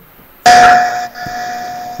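Video-call software tone as a call connects: a sudden loud electronic tone about half a second in, over a burst of hiss, then the tone held on more quietly.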